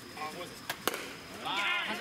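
A baseball bat striking the ball with one sharp crack about a second in, just after a fainter click, followed by players shouting as the ball is put in play.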